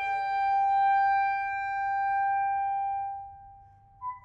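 Clarinet, viola and piano chamber music: one long high note is held steadily over a quieter, fading lower note, then dies away about three seconds in.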